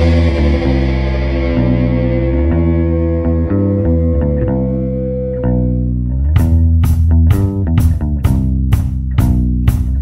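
Rock band playing an instrumental passage on electric guitar and bass guitar, with held chords at first; about six seconds in a steady beat comes back in.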